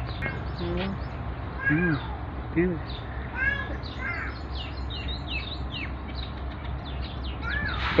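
Birds chirping repeatedly in quick, high notes, with a few short, lower calls between about two and four seconds in, over a steady low hum.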